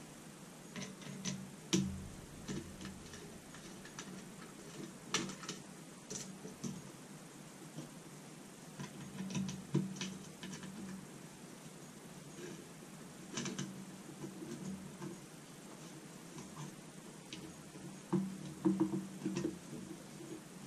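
Faint, scattered clicks and taps of a screwdriver on screws and the plastic camera body, with soft handling noise, as the body screws are loosened by hand.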